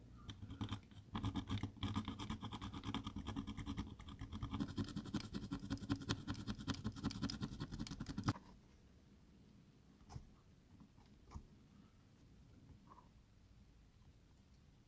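Fine-toothed hobby saw cutting through a styrene plastic model part in rapid back-and-forth strokes, which stop suddenly about eight seconds in. A few faint clicks follow.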